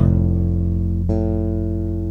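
Electric bass playing a chord voiced as a major chord: it is struck at once and rings on, and about a second in the upper notes change while the low note keeps sounding.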